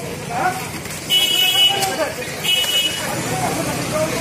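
A high-pitched horn toots twice, first for nearly a second, then briefly, over street voices and traffic.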